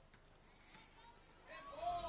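Near silence: faint outdoor match ambience, with a faint rising-and-falling call starting about one and a half seconds in.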